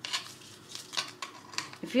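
Adhesive stencil vinyl being peeled by hand off a wooden plaque, giving a scattered run of small crackles and ticks.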